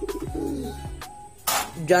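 Domestic pigeons cooing softly in the loft, with a short rustling burst about one and a half seconds in.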